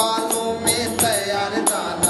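A man singing a Bhojpuri devotional bhajan in a folk style, accompanied by jingling percussion struck in a steady rhythm.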